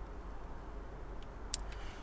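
Low steady background hum while plastic wiring-harness connectors are handled, with one sharp click about one and a half seconds in and a few faint ticks.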